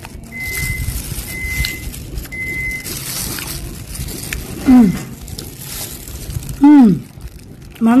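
A woman eating, with soft chewing noise early on, then two long falling "mmm" hums of enjoyment about five and seven seconds in.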